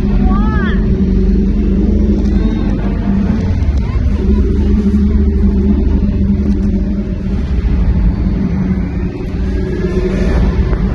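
Loud, steady low rumble of the arena show's soundtrack playing through the sound system during the animatronic T-Rex scene. A few high cries from the audience are heard in the first second.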